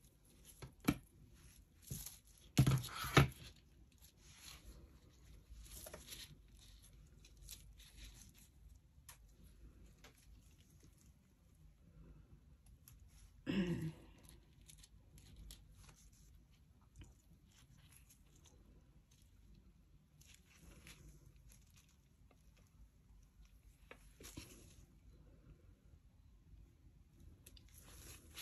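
Quiet handling sounds of small craft work: scattered clicks, taps and rustles as tweezers, scissors and pressed plant pieces are handled over a plastic-covered table. A few sharper knocks come about one to three seconds in, and one brief louder sound about thirteen seconds in.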